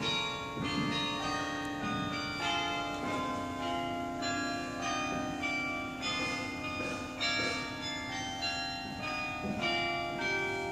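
Church bells ringing, several bells of different pitch striking one after another, a stroke roughly every half second to second, their tones ringing on and overlapping into a continuous peal.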